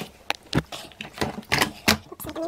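Plastic clicks and knocks from the tanks and body of a Vax DualPower Pet Advance upright carpet washer being handled: a string of irregular sharp taps, about seven in two seconds.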